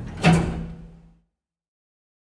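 A lift's sliding doors shutting with one sharp clunk about a quarter second in, followed by a short low ring that dies away within a second. Music tails off just before it.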